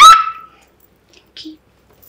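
A woman's short, high-pitched playful squeal right at the start, rising in pitch and then held briefly. After it there is quiet, with a faint brief sound about one and a half seconds in.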